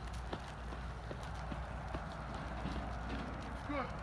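Footsteps on asphalt as a person walks with a litter of German shepherd puppies trotting behind: light, irregular clicks and scuffs over a low steady rumble.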